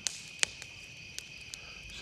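A steady chorus of crickets chirping in the dark, with a few sharp pops from a crackling wood bonfire, the loudest about half a second in.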